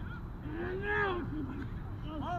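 One drawn-out shouted call from a person about half a second in, its pitch rising and then falling, lasting under a second, over a steady low rumble on the microphone.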